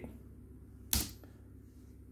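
A single sharp key press on a laptop keyboard about a second in, over quiet room tone.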